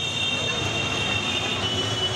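Busy street traffic: a jam of CNG auto-rickshaws with a low engine rumble under a steady noise, and a shrill high tone held throughout.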